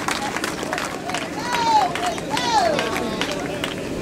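Two drawn-out shouted calls, one about a second and a half in and another about a second later, over background crowd chatter.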